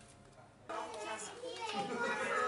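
Indistinct voices talking, cutting in abruptly about two-thirds of a second in after quiet room sound.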